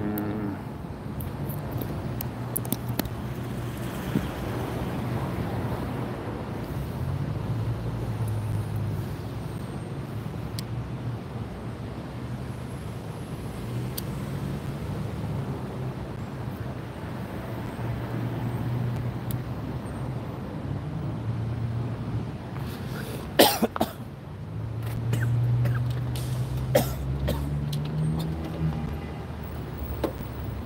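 A low vehicle-engine drone of passing traffic, wavering in pitch and rising near the end, under clicks and knocks from cables and gear being handled; the loudest is a cluster of knocks about two-thirds of the way in.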